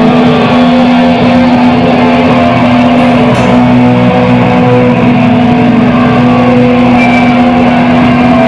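Loud distorted electric guitars from a live hardcore punk band, played through amplifiers and holding a steady, droning chord.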